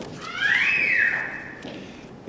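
A short high-pitched squeal, about a second long, that glides up in pitch, holds briefly, then drops away.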